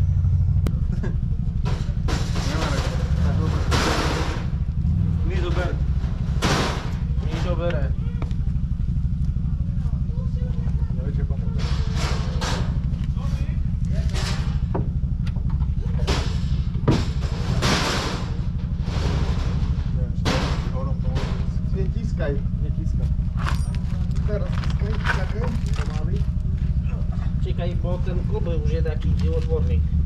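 Irregular clanks and scrapes of metal parts being handled as a Škoda 130 gearbox is manoeuvred into place from under the car, over a steady low rumble, with muffled voices.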